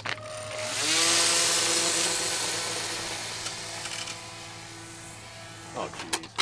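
Small electric RC Cub's motor and propeller spooling up about a second in to a steady whine, which slowly fades as the plane runs away along the ground on a take-off run that fails to lift off.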